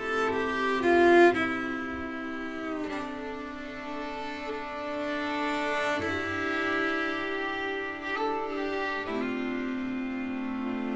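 Swedish folk polska played by a bowed string trio led by a fiddle, with a lower cello-like voice beneath. They hold long sustained notes, and the chord changes about every three seconds.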